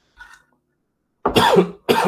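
A man coughing twice in quick succession, starting a little over a second in, after a brief faint throat sound.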